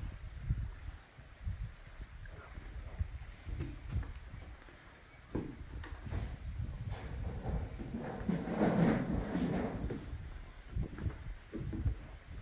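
Wind buffeting a phone's microphone, with scattered knocks and footsteps as the person walks, and a louder muffled stretch of sound about eight to ten seconds in.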